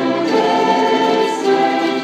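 Mandolin orchestra playing slow, sustained chords that change a couple of times.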